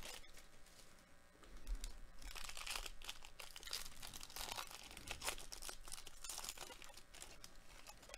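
Wrapper of a baseball card pack being torn open and crinkled by hand. A dense crackle of tearing and crumpling starts about two seconds in.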